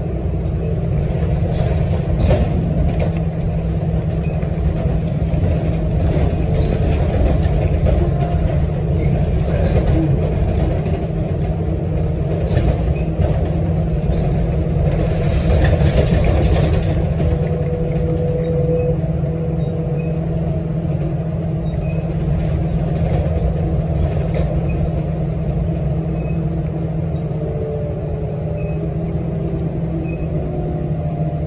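Inside an articulated city bus under way: steady engine and road rumble that swells briefly about halfway through, with faint gliding squeals at times from the bendy bus, part of its noise problems.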